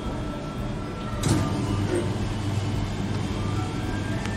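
Soft-serve ice cream machine running with a steady low motor hum while it dispenses. A sharp clack comes about a second in, as the dispensing handle is worked, and the hum grows stronger from then on.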